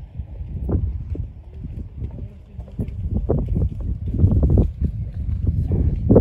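Wind buffeting the microphone: a low rumble in uneven gusts that grows louder through the second half.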